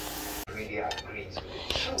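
A few faint clinks of a metal fork against cookware and a plate. A faint hiss cuts off abruptly about half a second in.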